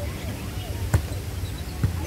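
A volleyball being struck by hand during a rally, two hits a little under a second apart.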